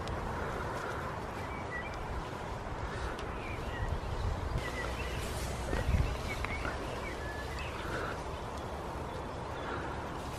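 Hands digging through loose compost, a soft crumbly rustling and scraping as it is turned over, with small birds chirping now and then in the background. A louder bump about six seconds in.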